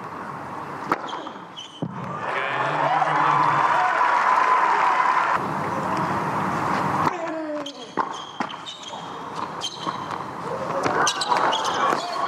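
Tennis ball bouncing on a hard court before a serve, then racket strikes of a rally, over the voices of the crowd. The background changes abruptly a few times where highlight clips are joined.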